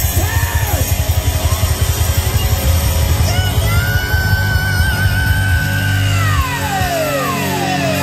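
Hard rock band playing live, with drums and bass pounding under a long held high note that starts a few seconds in and then slides down in pitch near the end, as the beat drops away.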